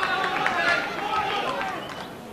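Crowd of spectators talking and shouting, many voices overlapping in a large hall.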